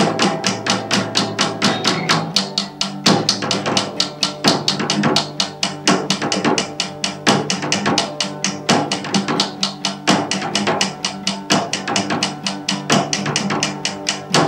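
Acoustic guitar strummed together with a single drum beaten with sticks in a quick, steady rhythm.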